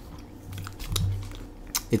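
A person chewing a soft, jelly-filled marshmallow with the mouth closed: faint wet clicks, with a low hummed 'mm' through the middle.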